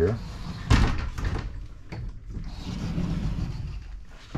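A closet door knocks shut once, sharply, about a second in, followed by soft handling noise and a low murmur of voices.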